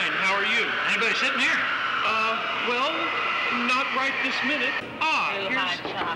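Indistinct talking, voices going back and forth over a steady background noise.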